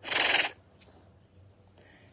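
A tiger hissing once, a short, sharp hiss about half a second long at the start, with no pitched growl in it.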